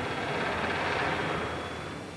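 A rushing mechanical roar that swells up and then fades, on an old film soundtrack.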